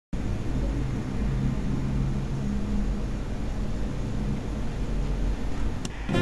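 A steady low rumble with a faint low hum in it, and a short click near the end.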